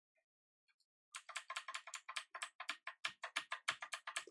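Computer keyboard key pressed over and over in quick succession, about seven presses a second, starting about a second in: the Tab key being tapped to move the cursor along.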